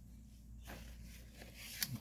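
Faint rustling of a paper towel wiping a steel knife blade, with a short click near the end.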